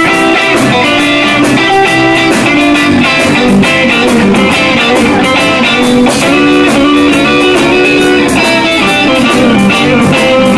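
Live rock and roll band playing an instrumental passage, led by an orange Gretsch hollow-body electric guitar with a Bigsby vibrato, over a steady drum beat.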